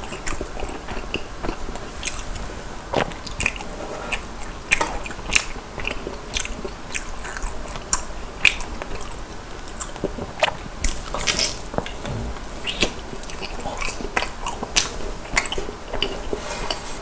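Close-miked mouth sounds of a person biting and chewing a crisp fried cheese ball, with irregular crunchy crackles and wet smacks throughout.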